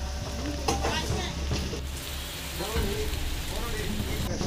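Steady hissing outdoor background noise over a low hum.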